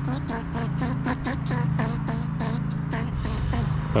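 A squirrel held in a hand, making rapid chattering calls, about five short falling chirps a second. A steady low hum runs underneath.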